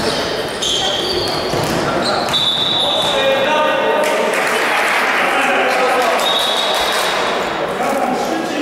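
Basketball game sounds in a gym: sneakers squeaking in short high chirps on the hardwood floor and the ball bouncing, with players calling out over the hall's echo.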